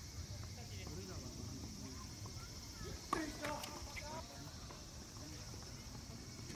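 Voices talking between points on an outdoor tennis court, with faint taps and a single sharp knock about three seconds in, the loudest sound, followed by a short call.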